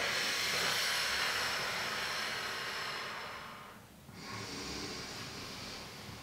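A woman breathing audibly with the effort of a Pilates roll-up. First comes one long, airy breath that fades out just under four seconds in, then after a brief pause a second, quieter breath.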